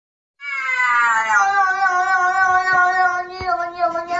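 A young cat giving one long, drawn-out yowl that starts about half a second in and sinks slightly in pitch as it is held, while it clings to a moving broom.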